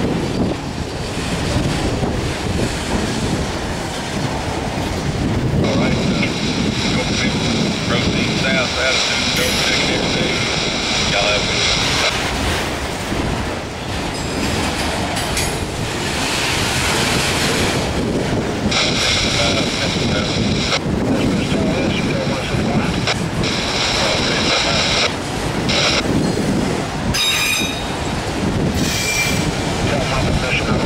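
A freight train of autorack cars rolling slowly past, its steel wheels rumbling on the rails. Twice it gives a long, high-pitched wheel squeal, about five seconds in and again about eighteen seconds in, each lasting several seconds.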